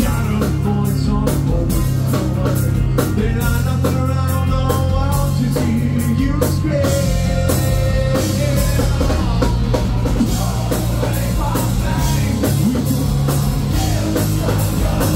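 Rock band playing live at full volume: electric guitars, bass and a drum kit keeping a steady beat, with a man singing over them.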